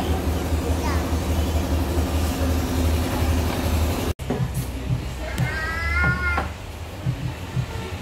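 Steady low hum of the café's room noise, broken by a sudden cut about halfway through; after it a high, slightly wavering cry lasting about a second.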